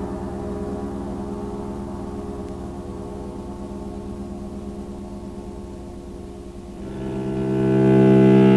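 Film score music: a sustained low chord that slowly fades, then low bowed strings, cello and double bass, swelling in louder near the end.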